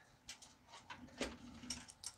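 Faint handling noise as a PC case and its cables are moved and turned on a desk: a few light clicks and knocks spread over the two seconds.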